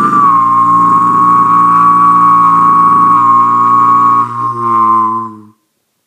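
A man's overtone singing: one long, loud, low vocal drone with a steady whistle-like overtone held high above it. The drone falters briefly near the end and breaks off about five and a half seconds in.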